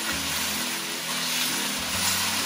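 Diced onions and massaman curry paste sizzling in a frying pan as they are stirred, with background music playing over them.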